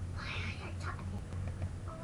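A short breathy, whispered sound about a quarter second in, then faint murmured voice sounds near the end, over a steady low hum.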